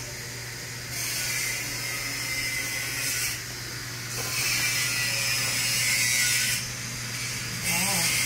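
Machinery in a small room: a steady low hum under a high whirring hiss that starts and stops in stretches of about two seconds.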